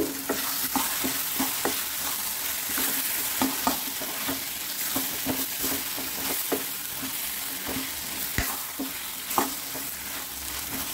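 A steel spoon stirring a thick tomato-onion masala with sliced potato in a frying pan, over a steady sizzle of frying. The spoon scrapes and taps on the pan about once or twice a second, with louder knocks right at the start and twice near the end.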